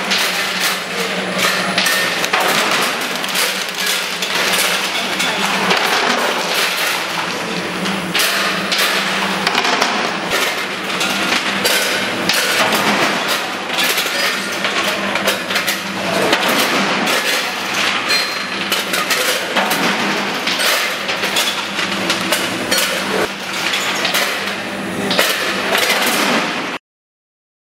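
Weighing and conveying machinery running: a steady low hum under continuous, irregular clattering and clinking of small hard knocks.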